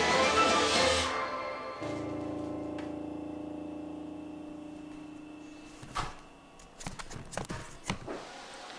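The closing music of a Tesla Model Y light show, played through the car's speakers, ends in a held final chord that fades out over several seconds. A few sharp clicks and a thunk follow near the end.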